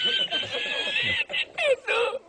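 A man laughing hard in a high-pitched, held squeal, edited in as a laughing meme; about a second in, it breaks into shorter, gasping bursts of laughter.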